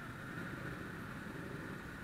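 Steady low rumble of idling motor scooters and traffic engines waiting at a red light.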